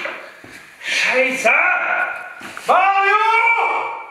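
A person's voice making long, gliding vocal sounds without clear words, one long rising call held near the end.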